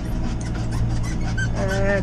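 Renault tractor's diesel engine running steadily, heard from inside the cab as a low drone. A man's voice starts in the last half second.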